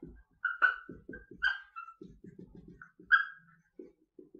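Dry-erase marker writing on a whiteboard: a quick run of short scratchy strokes broken by several high squeaks, the sharpest about half a second in and about three seconds in.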